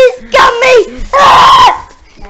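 Children screaming at a high pitch during rough play. There are three cries in quick succession, and the last is held for about half a second.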